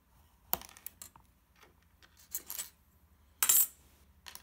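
Hobby knife cutting through a short length of PTFE tube on a particleboard scrap: a sharp click about half a second in, a few small ticks and a brief scrape. Near the end comes the loudest sound, a short metallic clatter as the knife is put down.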